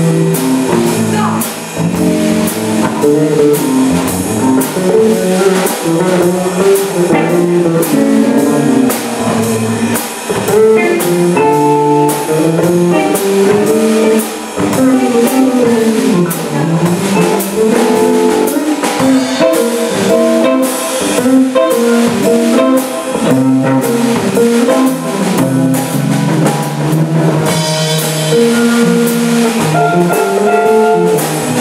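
Live blues played by an electric guitar, electric bass and drum kit, instrumental with no singing: guitar notes move over a steady bass line and a regular drum beat.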